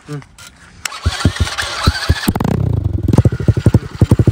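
A 125cc single-cylinder four-stroke dirt bike engine being cranked for about a second, catching a little past the middle with a short rise in revs, then idling with a loud, rapid, even exhaust beat from its silencer.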